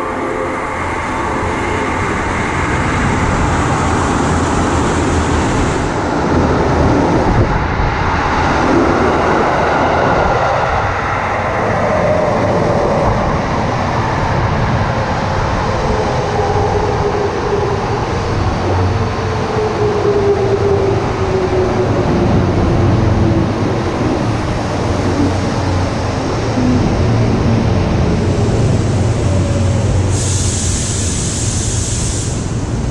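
Tokyo Metro 15000-series electric train running alongside the platform with a steady rumble of wheels on rail. Its motor whine falls slowly in pitch through the second half as the train slows.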